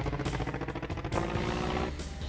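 Cartoon sound effect of a small aircraft-style engine, a steady buzzing drone made of fast, even pulses.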